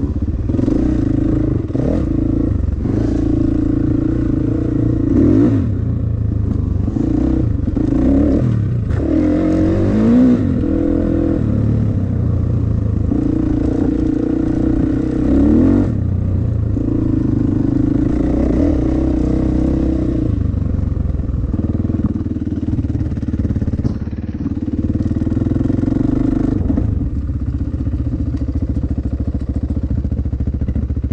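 Dirt bike engine running under constantly changing throttle, its pitch rising and falling, with a quick rev up and down about a third of the way in, heard from a camera mounted on the bike.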